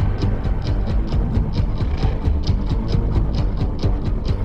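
Dance music with heavy bass and a fast beat of short, sharp strokes, about four or five a second.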